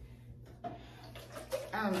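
Low room sound with a few faint, brief handling noises, then a woman saying a hesitant "um" near the end.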